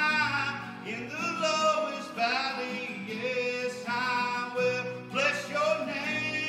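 A man singing a praise and worship song, accompanying himself on acoustic guitar, holding long notes that waver in pitch.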